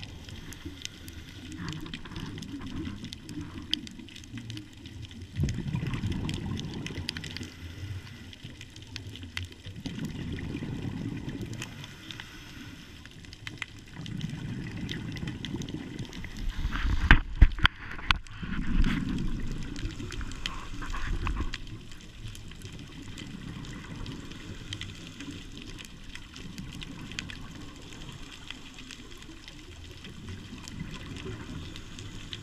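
Scuba diver's exhaled bubbles gurgling and rumbling from the regulator in bursts every four to five seconds, with quiet inhalation gaps between, heard through a camera's underwater housing. A cluster of sharp knocks a little past the middle.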